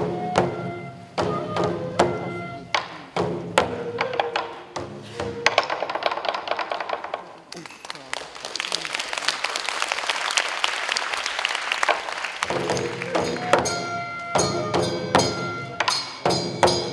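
Taue odori folk music: voices singing long held notes over taiko drum beats and sharp wooden strokes. In the middle the singing drops out for several seconds of dense, noisy clatter, then the singing and drumming come back.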